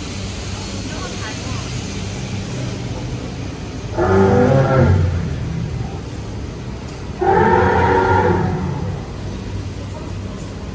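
Animatronic woolly mammoth's speaker playing two recorded roars, the first about four seconds in and the second about seven seconds in, each lasting a second or so, over a steady low hum.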